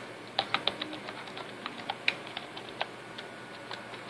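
Computer keyboard keys clicking as a password is typed: an irregular run of about a dozen keystrokes, with a quick cluster about half a second in and one sharper stroke about two seconds in.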